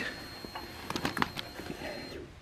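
A few light clicks about a second in as the ignition of a Yamaha FJR1300 motorcycle is switched on, over a faint steady high whine that stops near the end.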